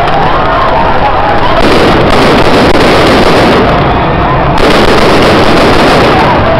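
Gunfire fired to disperse a crowd, recorded so loud that the sound is overloaded and blurs into a dense, continuous crackle, with voices shouting.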